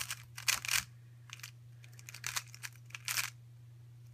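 A 3x3 Rubik's cube being turned by hand: quick plastic clicking and rattling of layer turns in several short bursts, over a steady low hum.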